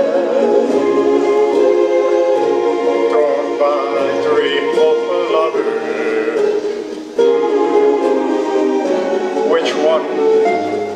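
A man singing into a microphone over instrumental backing music, his voice wavering with vibrato on held notes near the start and the end. The music dips briefly about seven seconds in.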